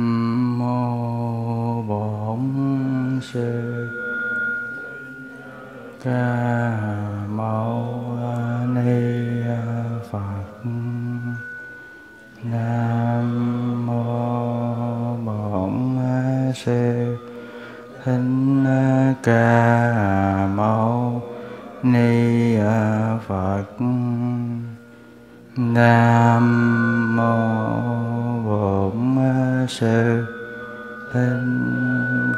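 A man's voice chanting a Buddhist invocation in long, held, slowly shifting notes, phrase after phrase. A few struck bell tones (about three seconds in, around ten seconds, and at the very end) ring on under the chant.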